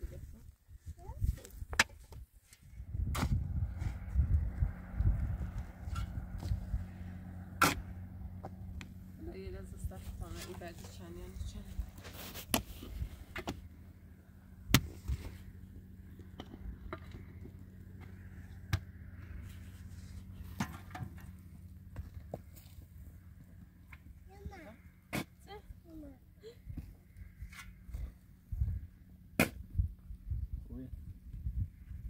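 Pickaxe and mattock blades striking hard, stony dry soil: single sharp blows at irregular intervals, a few seconds apart. A low steady hum comes in about three seconds in and runs underneath.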